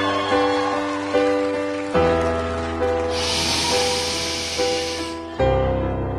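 Stage keyboard playing a piano-sound intro: chords struck about once a second over low bass notes that change twice. A steady hiss comes in for about two seconds in the middle.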